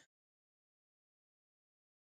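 Silence: the audio drops out completely between stretches of talk, as a noise gate does when nobody speaks.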